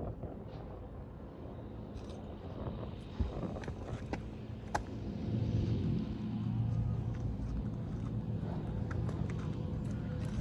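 Low engine rumble with a steady hum that grows louder about five seconds in, with a few sharp clicks scattered through it.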